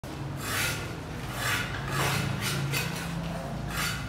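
A tool scraping across the rendered concrete underside of a staircase in a series of separate rasping strokes, over a steady low hum.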